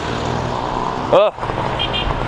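Road traffic passing close by: a steady rush of car engines and tyres, with a short 'oh' about a second in.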